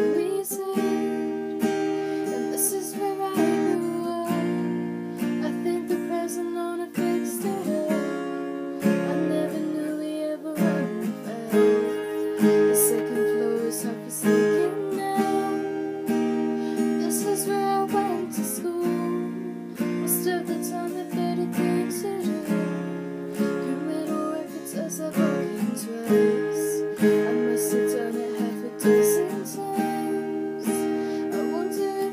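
A woman singing to her own strummed cutaway acoustic guitar, a slow ballad played with steady chords throughout.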